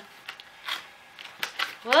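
A few brief, faint scuffs and rustles of a cardboard retail box being handled as its end flap is pried open, then a woman's voice starts near the end.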